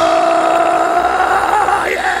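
A preacher's voice through a microphone, sliding up into one long held high note, a sung shout that rises slightly in pitch and is sustained for about two seconds.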